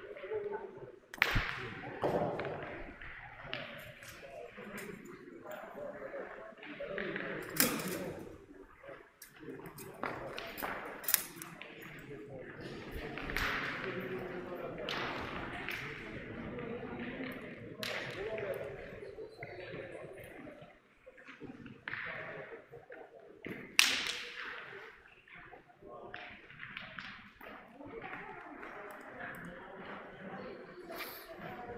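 Steel pétanque boules landing on a gravel court and knocking against one another: a few sharp metallic clacks, the loudest about a second in, near eight and eleven seconds, and near twenty-four seconds, over a low murmur of voices.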